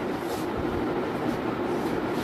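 Steady background noise: an even hiss and low rumble with no distinct events.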